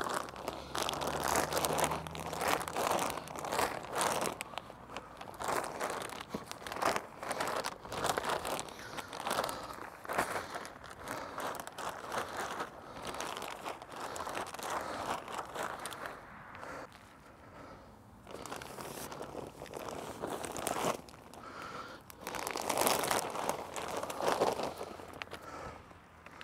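Plastic compost sacks crinkling and rustling in irregular bursts as they are lifted, upended and emptied, with compost spilling out onto the soil. The handling is loudest in the first few seconds and again near the end.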